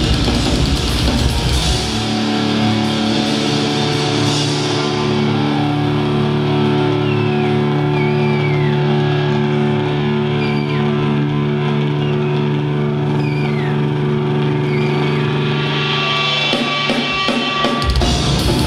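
Live metal band: drums and distorted guitars play for about two seconds, then drop to long held guitar chords with no drums, with a few short sliding high notes over them. The drums come back in near the end.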